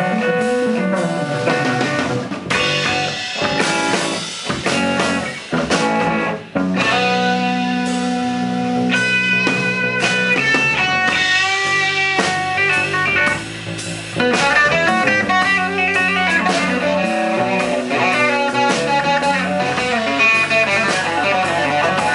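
Electric guitar played live in an instrumental break: single-note lines with bent notes, turning to quick runs of notes about two-thirds of the way through, with brief drops near the middle.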